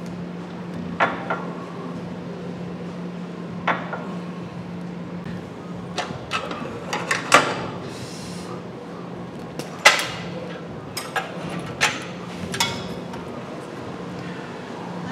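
Irregular metallic clanks and knocks from gym weight equipment, about a dozen scattered sharp hits with the loudest near the middle, over a steady low hum.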